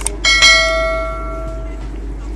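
A single bright bell ding that rings out and fades over about a second and a half: the notification-bell sound effect that goes with a YouTube subscribe-button animation.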